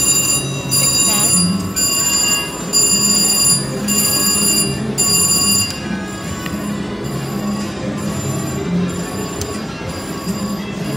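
VGT Lucky Ducky slot machine ringing its win bells while it pays out credits. About six bell rings come roughly one a second and stop about six seconds in, over steady casino background noise.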